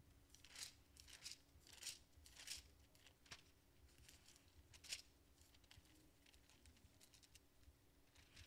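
Pages of a Bible being turned by hand: a series of faint, quick paper rustles and swishes, most of them in the first five seconds.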